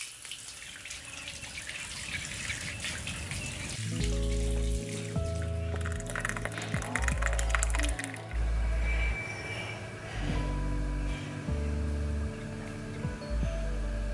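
Water running from a tap into a stone basin, a steady splashing hiss. About four seconds in, background music with held notes and a slow, deep bass line comes in and carries on over it.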